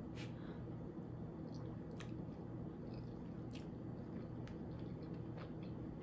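A person chewing a mouthful of spaghetti in a creamy sauce with the mouth closed: faint, with a few soft mouth clicks spread through it, over a steady low hum.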